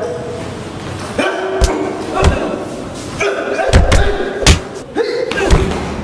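Fight-scene punch and body-hit impacts, about five sharp thuds, with men's voices grunting and shouting between them.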